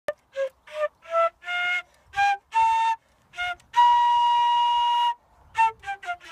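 Concert flute playing a simple tune in short, separate notes that climb in pitch, then one long held note of over a second, followed by two more short notes near the end.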